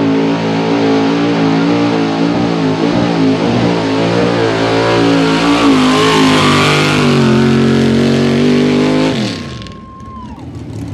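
Outlaw 4x4 pulling truck's unlimited-cubic-inch engine held at high revs under full load as it drags the weight-transfer sled, over a haze of tyre and dirt noise. About nine seconds in, the revs fall away and the sound drops off.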